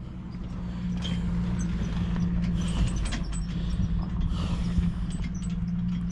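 An off-road vehicle's engine running steadily at low speed, with scattered ticks and crunches over it.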